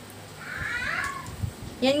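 A short, high-pitched cry about half a second in, rising and then dropping in pitch, like a cat's meow or a small child's call.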